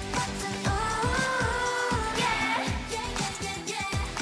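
A K-pop girl group singing an upbeat pop dance song, with a held, wavering vocal line over a steady beat and deep bass notes that slide downward about twice a second.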